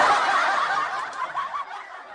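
Laughter that starts loud and fades steadily away.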